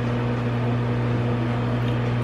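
Microwave oven running: a steady low hum.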